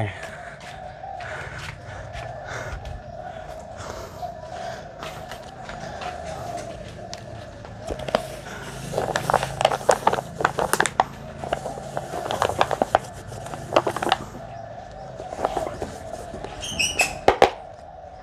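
Hands handling a clear plastic container and a cloth bag: scattered clicks, taps and crinkles, densest in the middle, over a steady hum.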